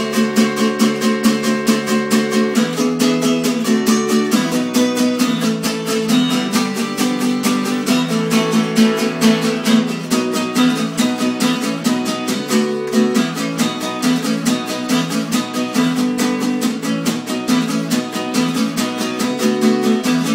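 Cutaway acoustic guitar strummed fast and steadily, the chords changing every couple of seconds.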